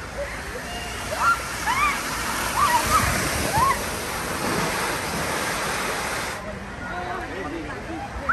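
Water rushing and spraying as riders slide down a foam water slide and splash into its run-out, with short voices calling out over it. The rush stops abruptly about six seconds in.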